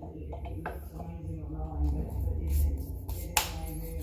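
Faint background music and voices over a low rumble, with one sharp knock a little after three seconds in.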